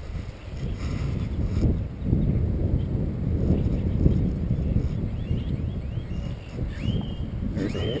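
Wind buffeting a camera microphone, a continuous uneven low rumble, with a few faint high chirps near the end.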